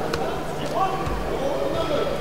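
Men's voices calling out from cageside in an echoing hall over steady crowd noise, with one dull thud about a second in.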